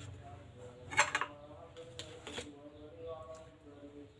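A metal spoon clinking against a stainless-steel pot of coconut milk as it is scooped out: a quick cluster of clinks about a second in, then two lighter ones around two seconds.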